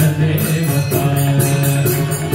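Devotional bhajan: a man's voice chanting a melody into a microphone over a sustained drone, with steady jingling percussion about four strokes a second.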